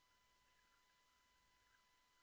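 Near silence, with only a faint steady high whine and hiss from the recording chain.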